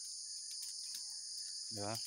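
A steady, high-pitched chorus of insects droning without a break.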